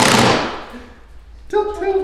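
Cordless drill driving a self-tapping screw through the side skirt, a rapid rattling burst that dies away within the first second. A man's voice comes in near the end.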